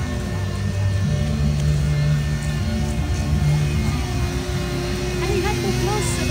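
Handheld electric ice-carving tool running as it cuts into a block of ice, with music playing in the background.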